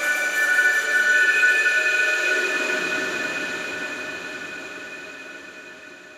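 Outro of a dark psytrance track: the beat has stopped, leaving several steady high electronic tones over a noise wash. The low part of the wash drops away about halfway through, and the whole sound fades out steadily.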